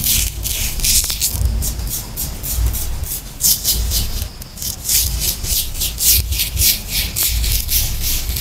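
Loose colored sand being rubbed and swept by hand across a sticky sand-art sheet: a quick run of short gritty hisses, about four or five a second, briefly thinning out about halfway through.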